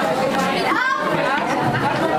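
Many voices, children and adults, chattering at once in a crowded room, with one voice rising in pitch above the hubbub a little before the middle.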